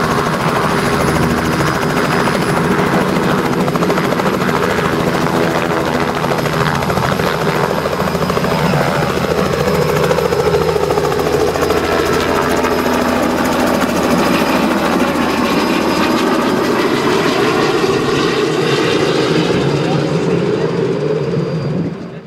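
Robinson R66 turbine helicopter's rotor and turbine engine running at power as it lifts off and flies away, with the pitch sliding down partway through as it passes and moves off.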